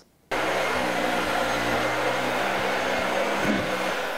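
Upright vacuum cleaner running: a steady motor whir with a constant hum, switching on abruptly about a third of a second in after a moment of near silence.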